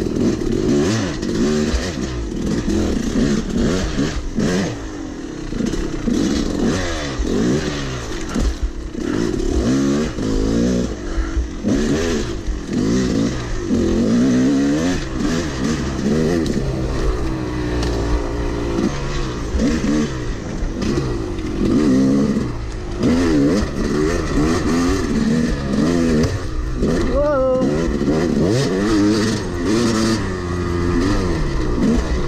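Yamaha YZ250 two-stroke dirt bike engine under hard riding, its pitch rising and falling every second or two as the throttle is opened and closed over rough trail.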